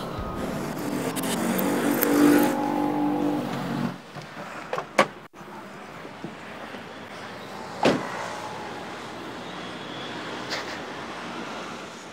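A motor vehicle's engine running, louder through the first four seconds and then dropping to a lower steady hum, with a few sharp clicks.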